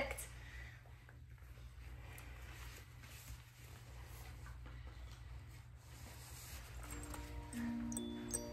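Quiet room with a faint, steady low hum and a few soft faint sounds; about seven seconds in, a slow glockenspiel melody of single ringing notes begins.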